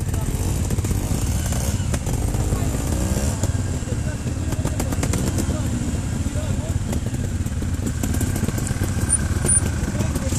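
Trials motorcycle engine running at low revs, its pitch rising and falling a couple of seconds in.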